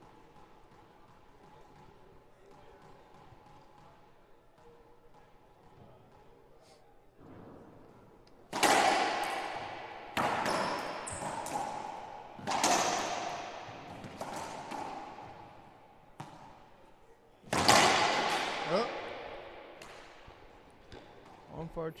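Racquetball rally: the hollow rubber ball is struck by the racquets and cracks off the court walls. After a quiet lead-in, about six loud hits come a second or two apart, each ringing on in the echo of the enclosed court.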